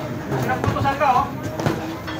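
Voices of onlookers talking, with a few sharp smacks of gloved punches or kicks landing during sparring, about three in two seconds.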